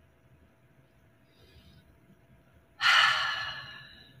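A woman's deep breath, heard as one breathy rush that starts suddenly about three seconds in, after near quiet, and fades away over about a second.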